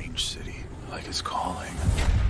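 Movie trailer soundtrack: a low rumbling score under a quiet whispered voice.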